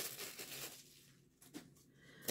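Faint crinkling of a clear plastic bag being handled, fading out within the first second, then near silence.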